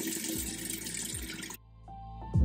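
Bathroom tap running into a sink, a steady rush of water that cuts off suddenly about one and a half seconds in. Soft music starts near the end.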